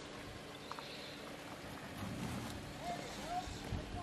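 Jeep Wrangler Rubicon's engine running low and steady as it crawls up a rock ledge, faint, swelling slightly about two seconds in.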